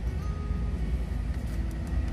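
Steady low rumble in the cabin of a Nissan Elgrand E51 with its engine running and the climate-control fan blowing, while the air conditioning is being switched on. A few light button clicks near the end.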